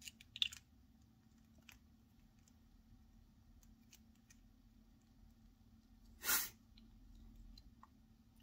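Small plastic clicks from a TWSBI Eco fountain pen's piston mechanism being held and turned in the fingers, a few in the first second or two, as its threaded parts are worked so the piston steps back out. A short, louder noise comes about six seconds in.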